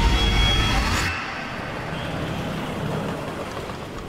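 A deep low rumble that cuts off about a second in, followed by steady city road traffic noise.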